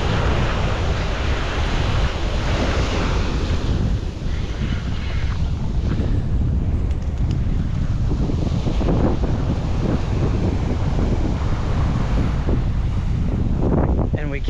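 Wind buffeting the microphone with a steady low rumble, over ocean surf washing up onto a sand beach.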